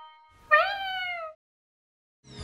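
A single cat meow about half a second in, rising then falling in pitch and cutting off suddenly after just under a second. The last note of a trumpet fanfare fades out just before it.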